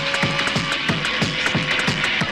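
Fast, hard electronic dance music from a free-party tekno mix: a pounding kick drum about three times a second, each kick dropping in pitch, with sharp, clicky high percussion between the beats and a steady held tone underneath.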